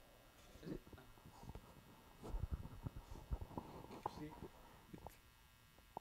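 Faint, low voices off the microphone, mixed with soft scattered knocks and rustles.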